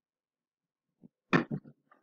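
Silence for about a second, then a man's brief grunt-like vocal sound, followed by a few small mouth clicks.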